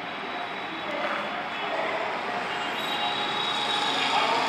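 Steady engine-like rushing noise, growing gradually louder, with a faint high whine coming in during the second half.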